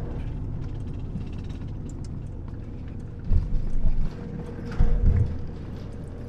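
Campervan cab while driving: steady engine and road rumble with faint rattles, and two short low thumps, about three seconds in and again near five seconds.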